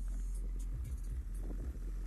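Deep, continuous bass from a car audio system's Skar Audio subwoofers playing music, heard from outside the car.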